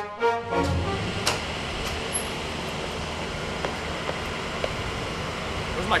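A music cue breaks off about a second in, leaving steady outdoor background noise: an even hiss with a few faint clicks.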